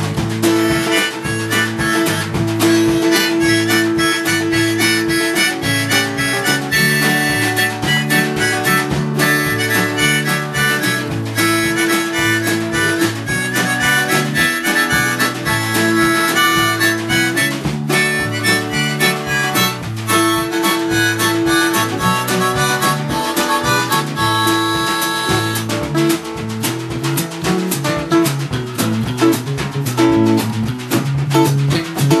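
Harmonica solo played into a vocal microphone, with held and bending notes over a live band of acoustic guitar, bass guitar and drums keeping a steady beat.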